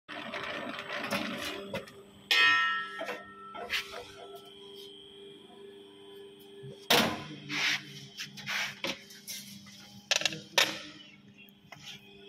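Murukku-making machine running with a steady motor hum, broken by sharp metal knocks and clangs. A loud ringing clang comes just over two seconds in and another strong knock about seven seconds in.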